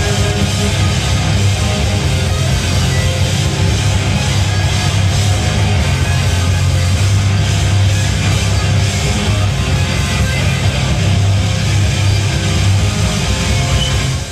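Screamo band playing live: distorted electric guitars, bass and drums, loud and dense.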